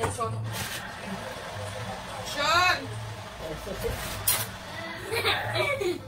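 Indistinct voice speaking briefly twice over a low steady hum, with a sharp knock about four seconds in.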